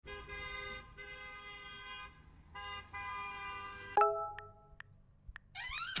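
Car horn giving two long steady honks, the second starting about two and a half seconds in, over a low engine rumble. A short, louder tone follows about four seconds in.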